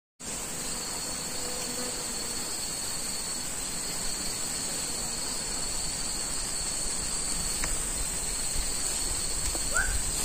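Chorus of insects in tropical forest giving a steady, high-pitched drone at two pitches.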